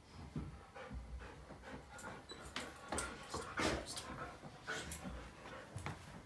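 A dog panting in short, irregular breaths.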